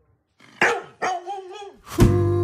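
A short, sharp bark-like call about half a second in, then a held, slightly wavering cry lasting most of a second.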